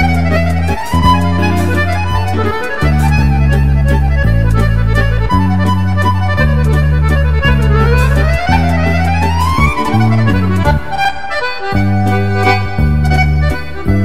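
Accordion playing a valse musette: quick melody runs that climb and fall over a steady bass and chord accompaniment.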